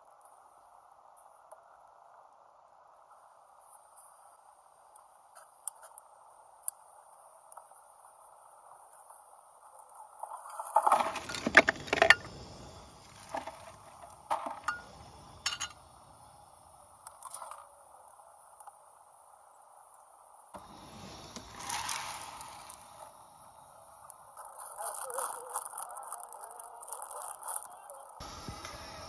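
Camp gear being handled: clinks, knocks and rustles from setting up a portable gas camp stove and rummaging in a cooler, in clusters with the loudest about eleven to twelve seconds in, over a faint steady background hiss.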